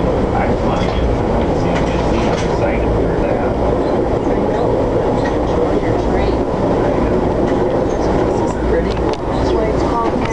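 Steady running rumble of an Amtrak Capitol Limited passenger car rolling along the rails, heard from inside the car, with faint scattered clicks from the wheels and track.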